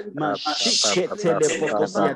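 A person's voice praying aloud in quick, continuous speech, with a drawn-out hissing 'sh' sound about half a second in.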